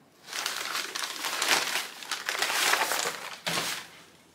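White packing paper crinkling and rustling as it is pulled off and crumpled away from a heavy ceramic utensil crock. The crackling is a steady stream with a short break just before the end.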